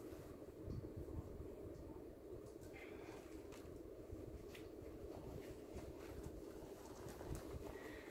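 Quiet room tone, a steady low hum, with a few faint soft taps and handling sounds as a doll's clothes are handled.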